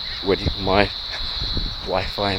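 Crickets trilling steadily in one high, unbroken pitch, with a man's short murmur of voice just under a second in.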